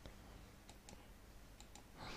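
Near silence: faint room tone with a few very faint, scattered clicks.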